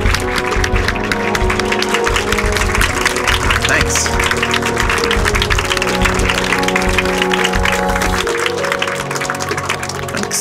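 An audience applauding over background music with sustained notes. The clapping dies down near the end.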